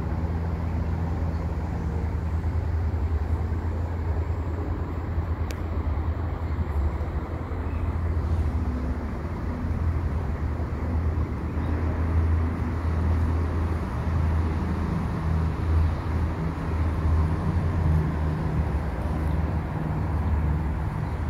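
Steady low outdoor rumble, with a single faint click about five and a half seconds in.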